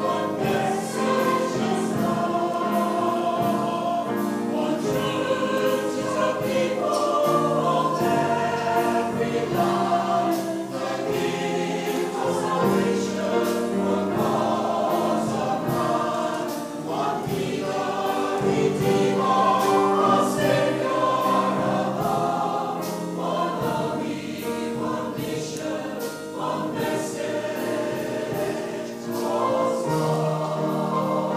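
A Salvation Army songster brigade, a mixed choir of men's and women's voices, singing a sacred song in parts without a break.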